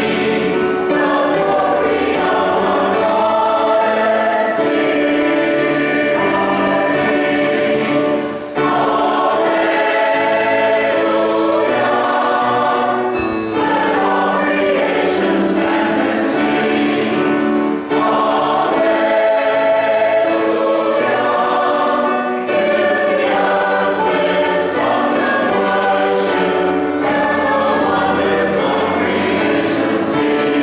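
Mixed church choir singing a Christmas cantata in sustained, overlapping chords, with brief breaks between phrases about eight and eighteen seconds in.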